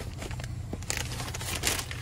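Paper takeout bag rustling and crinkling in bursts as it is handled and passed across.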